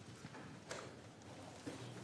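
Faint footsteps of a person walking across the room, a few soft separate steps.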